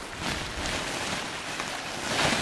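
A woven plastic sack rustling and crinkling as it is lifted and its rubbish tipped out onto a pile of ash, a steady rustling hiss.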